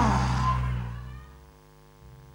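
The tail of a long shout from a congregation and preacher, the voice sliding down in pitch and dying away within the first half-second, with low held music notes stopping about a second in. After that there is only a faint steady electrical hum.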